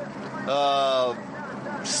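A man's voice holding one drawn-out hesitation sound for well under a second, about halfway in, over faint steady background noise.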